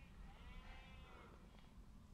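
Near silence, with one faint animal call about a second long that rises and then falls in pitch, starting just after the beginning.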